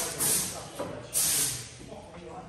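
Two short bursts of hissing, one near the start and one just over a second in, each lasting about a third of a second.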